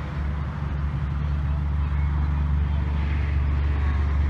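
A vehicle engine idling as a steady low hum, slowly growing a little louder.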